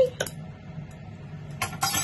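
Light clinks of kitchen utensils being handled: one short clink just after the start and a quick cluster of clinks near the end.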